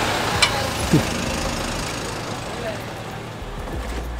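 Road traffic noise: a motor vehicle passing and slowly fading away. There are two sharp clicks in the first half second.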